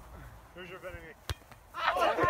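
A single sharp smack of a volleyball being struck by a player's hands or arms, about a second and a quarter in, between faint distant calls. A loud shout starts just before the end.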